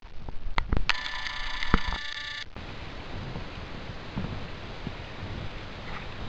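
An electronic tone made of several steady high pitches sounds for about a second and a half, then cuts off suddenly, with a few sharp clicks around its start. Steady noise follows.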